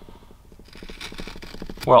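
Carving knife paring across the end grain of a basswood blank: a quiet, rapid crackling scrape as the blade shaves the wood. A clean end-grain cut like this is the test of a sharp blade.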